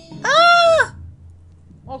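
A single high-pitched squeal from a person's voice, lasting just over half a second, rising and then falling in pitch, followed by quiet.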